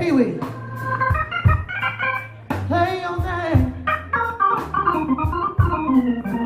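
Live blues band playing an instrumental stretch between sung lines: held keyboard chords over a bass line and drums, with a steady cymbal ticking several times a second and a sliding held note about halfway through.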